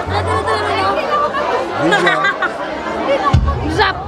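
Loud party music with a bass line, under the chatter and voices of a dancing crowd.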